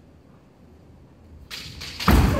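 A kendo fencer's sudden lunge to attack: two quick swishing sounds near the end, after a quiet stretch of hall sound.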